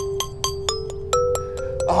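Outdoor playground metallophone's metal tubes struck quickly with a mallet, about six strikes a second, several different pitches ringing on and overlapping.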